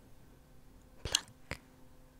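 Close-miked ASMR plucking sounds: two short, crisp clicks about half a second apart. The first, about a second in, is louder and doubled.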